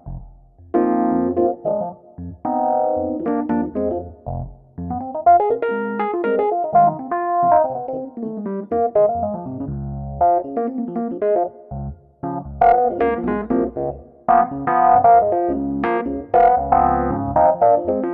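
Rhodes electric piano sound played on a Nord Stage 3 stage piano: a solo jazz improvisation of chords and short melodic phrases over low bass notes, broken by brief pauses between phrases.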